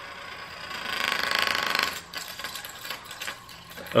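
Small plastic spin top whirring on its metal tip against a hard tabletop, with a fast buzzing rattle from the little metal snake touching it, which swells about a second in and fades after about two seconds as the top slows.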